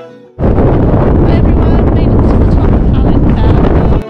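Strong wind buffeting the camera microphone, a loud, rough rumble that starts abruptly about half a second in as the music drops out.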